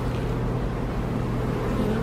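Honeybees buzzing around a brood frame lifted out of an open hive: a low, steady drone of the colony.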